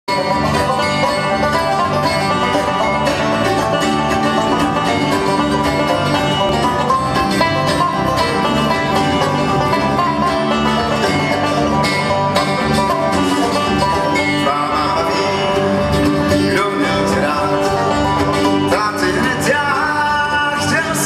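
A live bluegrass band playing: picked banjo and strummed acoustic guitars carry a steady, busy tune, with a sung melody line appearing in the last few seconds.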